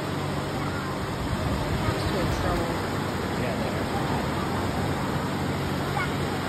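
Ocean surf breaking and washing over the shallows, a steady rush of noise.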